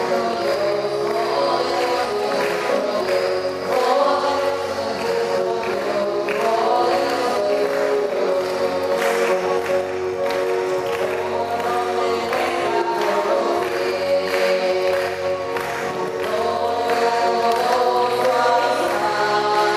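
A choir singing a hymn with instrumental accompaniment, held steady without a break.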